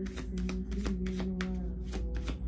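A tarot deck being shuffled by hand: a quick, irregular run of card clicks.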